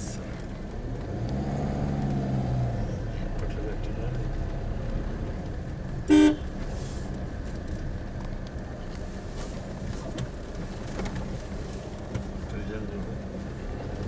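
Vehicle driving slowly, heard from inside, with a steady low engine and road rumble. A single short, loud horn toot sounds about six seconds in.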